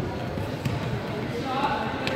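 Indistinct voices echoing in a gymnasium, with a raised voice in the second half and a couple of soft thuds.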